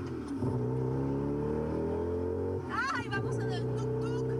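Engine of a small open motor vehicle heard from on board, its pitch rising steadily as it picks up speed, dipping briefly about three seconds in before running on. A short high voice sounds over it at the dip.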